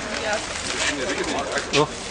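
Low, murmured voices of people nearby, soft drawn-out vocal sounds with a spoken 'oh' near the end.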